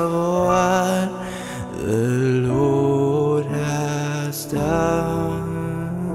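A man singing a wordless, gliding melodic line over sustained piano chords in a slow, quiet worship song.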